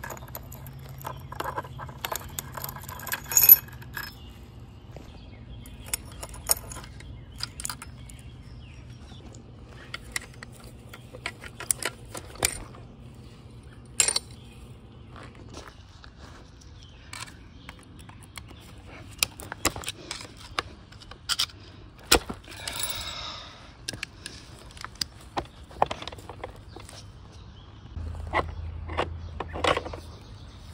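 Irregular metal clinks, taps and rattles of Honda Civic Hybrid CVT internals being handled: the sprocket chain, then a clutch drum being lifted out of the aluminium case. The loudest clinks come near the start, and a brief scraping rustle comes a little past the middle.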